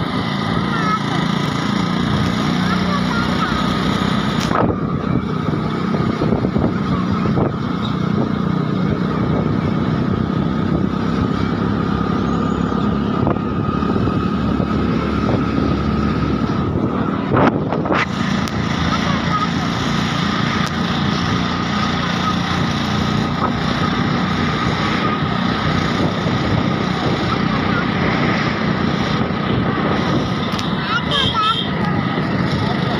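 A motorcycle being ridden along a road: its engine running steadily under continuous wind and road noise, with one short knock about 17 seconds in.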